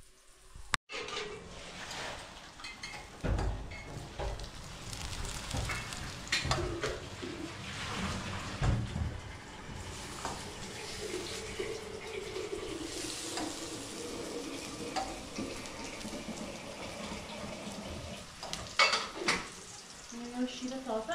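Patties sizzling as they fry in oil in a pan, with frequent clinks and knocks of a utensil against the pan and dishes. There is a sharp click about a second in.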